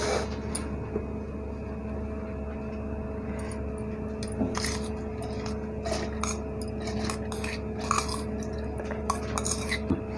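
A steel spoon and stainless-steel bowls clinking and scraping against a stainless-steel mixer-grinder jar as soaked rice and lentils are scooped and tipped in. The clinks are light and scattered, over a steady background hum.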